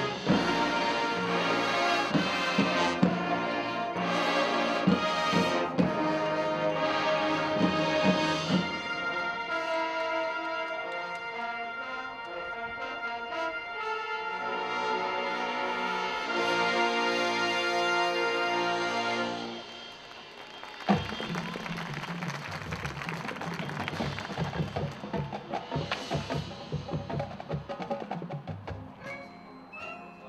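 High school marching band of brass, woodwinds and percussion playing its field show. Loud full-band chords with sharp accented hits give way to held chords. About two-thirds of the way through, the music drops suddenly to a softer, busier passage with a single hit and quick percussion.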